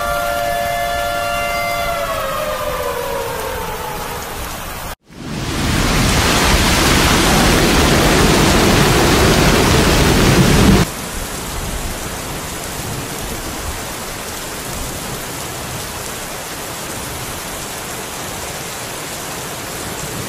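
Rushing floodwater and rain noise. It is loudest for about six seconds in the middle and cuts off suddenly, then continues as a steadier, quieter rush. At the start a held tone slides slowly down in pitch over about four seconds.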